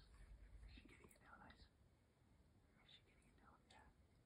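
Near silence with faint whispering in two short spells.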